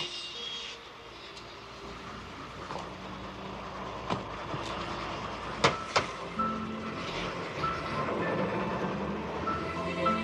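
Film soundtrack playing: a steady low rumble like traffic, with a few sharp clicks around the middle, and soft musical tones coming in about six and a half seconds in.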